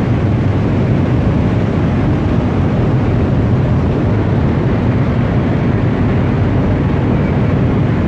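Steady, loud low rumble of a cargo ship under way at slow speed while berthing: its engine running, with wind buffeting the microphone on the open deck.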